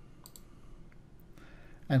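A few faint, quick computer mouse-button clicks.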